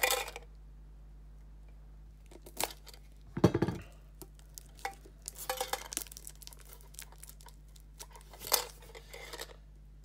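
Tight plastic shrink-wrap on a metal Pokémon mini tin crinkling and tearing in scattered bursts as fingers pick at it, with a louder knock about three and a half seconds in.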